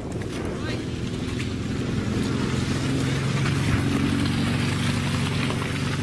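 A vehicle engine running at a steady speed, a low even drone that grows slightly louder after about two seconds, with a rushing noise over it.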